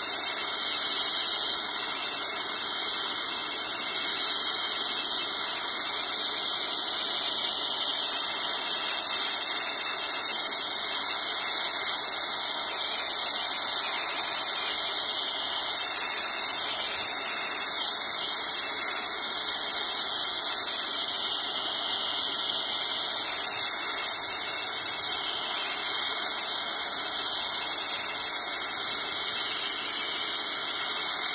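Gas torch flame running with a steady hissing rush as it melts sterling silver in a crucible, swelling a little now and then.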